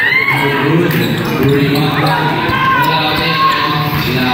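A basketball being dribbled on a painted concrete court during a game, among the voices of players and spectators.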